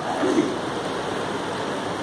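Steady hiss of room background noise, with a brief low vocal sound shortly after the start.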